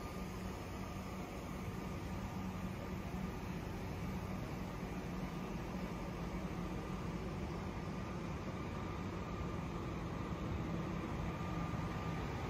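Steady low hum and rush of Greyhound diesel motorcoaches idling in a parking lot, with a faint steady whine above it.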